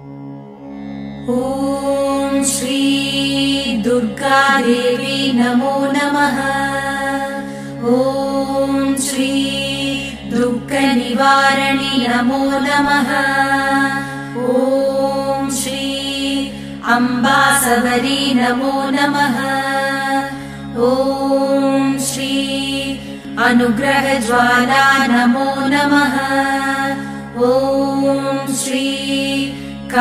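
Devotional chant to the goddess Durga sung over a steady drone accompaniment. The drone fades in first and the voice enters about a second in, singing short repeated phrases in a chant-like cadence. A bright percussive strike comes every few seconds.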